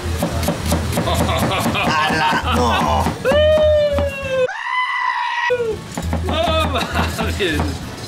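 A long, high, wavering cry about three seconds in, lasting about two seconds; its second half sounds thin and filtered, like an edited-in sound effect. Around it are laughing voices and the tap of a knife slicing an onion on a plastic cutting board.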